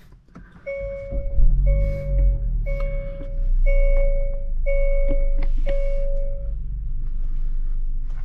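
2024 Hyundai Tucson GLS's engine starting about half a second in, briefly rising in pitch and settling to a steady idle. Over it the dashboard chime sounds six times, evenly about once a second, each tone held just under a second.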